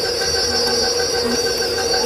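Electric stand mixer running steadily at a constant speed, its beater churning tamale masa in a steel bowl: an even motor whine.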